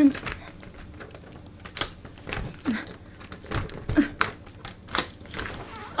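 A string of irregular sharp clicks and light knocks, about two or three a second, with a few brief hummed sounds near the middle.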